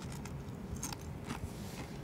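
A person chewing a bite of pan-fried gyoza, with a few faint crisp crunches.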